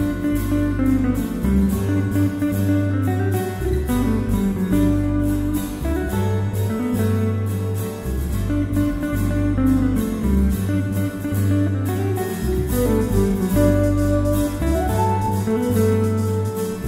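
Instrumental fusion music: plucked guitar over a bass guitar line that moves in long held notes. Higher sustained melody notes come in near the end.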